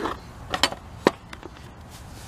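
Three or four light clicks and knocks of parts being handled at a generator's sheet-metal control panel, spread through the moment.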